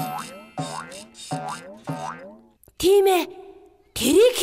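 Cartoon boing sound effect of a coil spring bouncing, repeated about five times in quick succession over the first two and a half seconds. A short, loud vocal exclamation from a cartoon character follows near three seconds.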